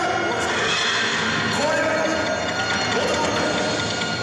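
A yosakoi dance track over loudspeakers, with a voice calling out long drawn-out lines over the music.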